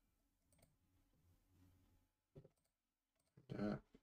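Near silence with a faint computer mouse click about half a second in, running a command, and a second soft click a couple of seconds later.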